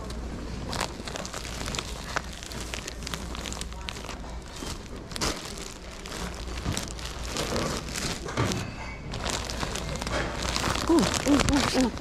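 Clear plastic bags of folded linens crinkling and rustling in a run of short crackles as they are picked up and handled.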